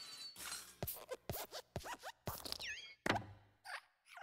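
Cartoon sound effects of the Pixar desk lamp hopping and stamping: a run of thumps about half a second apart, mixed with squeaky creaks of its metal springs and joints that slide up and down in pitch. The loudest thump comes about three seconds in.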